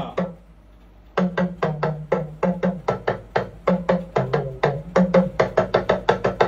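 Yoruba talking drum struck with a curved stick in a quick steady rhythm, about five strokes a second, starting about a second in. The pitch steps up and down between high and low notes as the drum's tension cords are squeezed.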